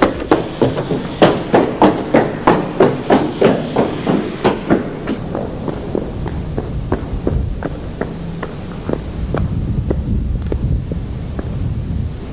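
Running footsteps on stone, about three steps a second, loud at first and then fading away over the second half. A low hum sits underneath.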